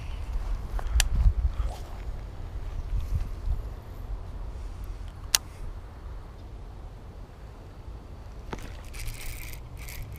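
Uneven low rumble on the microphone, strongest in the first few seconds, with a few sharp clicks: one about a second in, one past the middle and one near the end.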